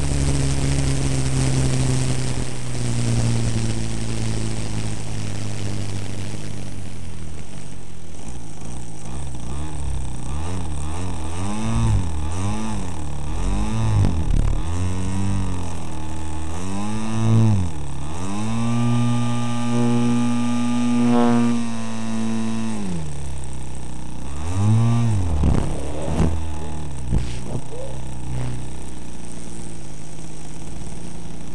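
Engine of a 30% scale Peakmodel Yak 54 RC aerobatic plane, heard from a camera on board with wind rushing over the microphone. It runs steadily at first; from about ten seconds in the revs swell up and fall back again and again as the throttle is worked through the manoeuvres, with a longer high-rev stretch near the middle.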